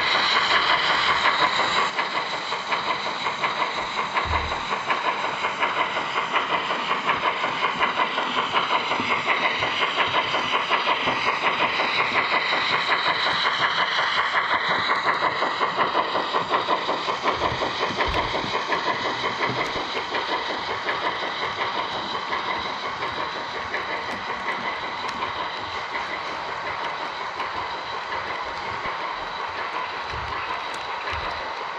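Model train rolling past on the layout track: rapid, steady clicking of many small wheels over the rail joints with a steady high hum, fading slowly over the last several seconds as the train draws away.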